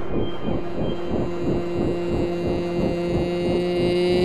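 Electronic music: a sustained synthesizer drone, one steady held tone with fainter tones above it, over a fast regular pulse.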